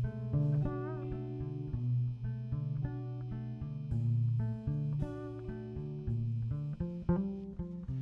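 Live instrumental band music led by a plucked low string line, short bass notes moving under higher notes. A faint high sustained tone sits over it and stops near the end.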